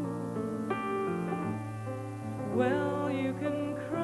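Female singer performing a slow torch ballad over sustained low accompaniment, with vibrato on held notes about two and a half seconds in and again at the end.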